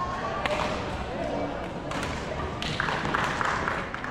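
Badminton hall ambience: indistinct voices of players and onlookers, with a few sharp knocks and thuds from play on the courts.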